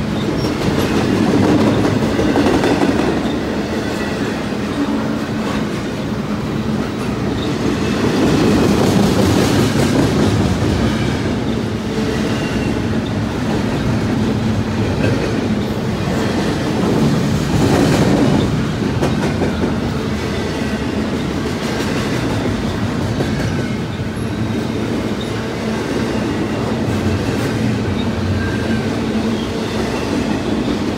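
Double-stack intermodal container well cars of a freight train rolling past at close range: a continuous rumble and clatter of steel wheels on rail, swelling louder a few times.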